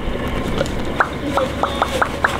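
Footsteps of foam clogs on a wooden dock's boards: a few short knocks, the first about a second in, then three more in quick succession, over steady background noise.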